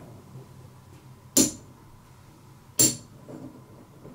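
Poker chips clicking as they are set onto the pot stack, twice, about a second and a half apart.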